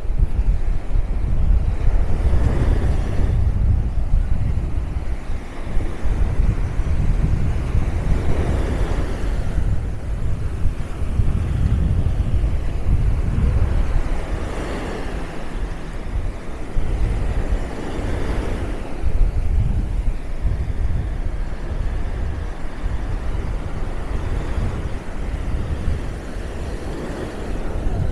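Small sea waves breaking and washing up the sand, swelling and fading every few seconds, under a steady low rumble of wind buffeting the microphone.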